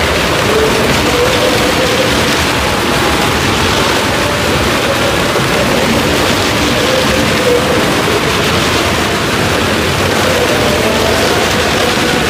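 Maruti 800 cars' small three-cylinder engines running hard as they circle the vertical wooden wall of a well of death. The result is a loud, steady din, echoing in the wooden drum, with the engine pitch wavering up and down as the cars go round.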